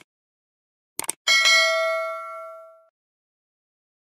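Subscribe-animation sound effects: two quick clicks about a second in, then a bright bell ding that rings out and fades over about a second and a half.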